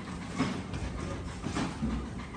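Steady low workshop background noise, with a few faint knocks and rustles as the coil plate is handled.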